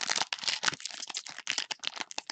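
Foil wrapper of a Panini Select basketball card pack being torn open and crinkled by hand, in a fast, dense run of crackles.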